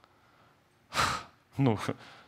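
A man's quick, audible breath close into a handheld microphone about a second in: a short rush of breathy noise between pauses in his speech.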